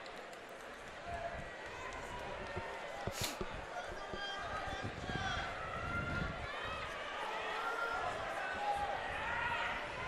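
Indistinct voices calling out over a steady arena background noise, growing busier in the second half, with one sharp click about three seconds in.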